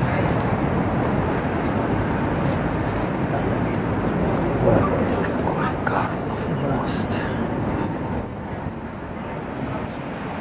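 Outdoor crowd murmur of many passers-by talking, over a loud steady rushing noise that eases slightly near the end.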